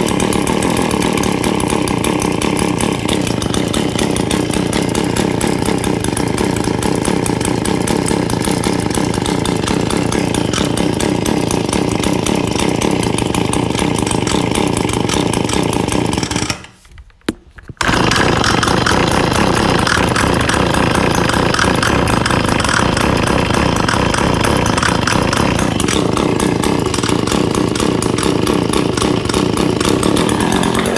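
Echo PB-2620 handheld leaf blower's two-stroke engine running steadily after a cold start. The sound cuts out for about a second just past the middle, then resumes at the same level.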